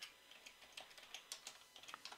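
Near silence with faint, irregular light clicks.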